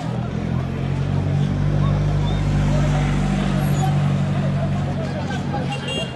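A motor vehicle's engine running close by, a steady low hum that grows louder over the first two seconds and eases off near the end, with crowd chatter underneath.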